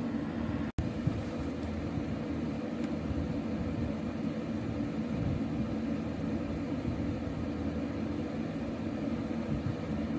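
Steady low background noise, machine-like room tone with a faint hum, with a momentary dropout a little under a second in where the recording cuts.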